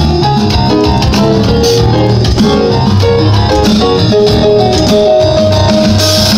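Live band music: a Yamaha synthesizer keyboard playing a busy run of notes over an electronic drum kit keeping the beat, with one note held near the end.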